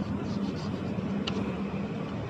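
Steady background hum and hiss of room noise, with one faint click about a second and a quarter in.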